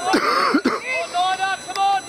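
Several people shouting and calling out, in short loud bursts, with a harsher shout near the start.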